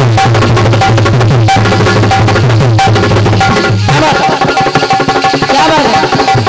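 Dholak played in a fast, dense rhythm under steady held melodic notes, an instrumental break in kirtan music. The drum strokes stand out more sharply in the second half.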